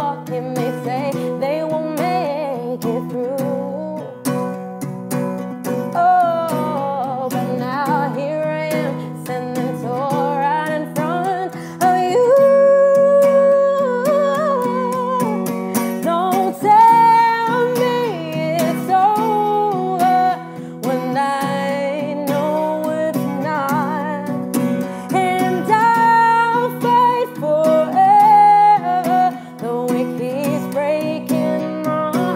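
A woman singing a slow pop song to her own strummed acoustic guitar, a small capoed Cort. About twelve seconds in, the song grows louder, with higher, longer-held notes.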